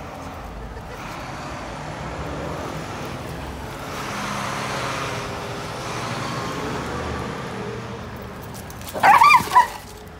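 Road traffic passing, a steady rush that swells and then fades, then a dog barks twice in quick succession near the end.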